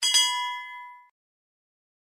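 A single bell-like ding sound effect, the notification-bell chime of a subscribe-button animation: it strikes suddenly and rings out, fading away within about a second.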